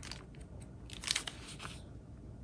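Paper pages of a Hobonichi Weeks planner being turned by hand: a soft, crackly rustle with a few sharper flicks about a second in.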